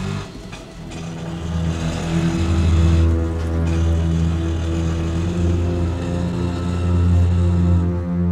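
Tense background music: a low, sustained bass drone with held notes, swelling in loudness over the first few seconds.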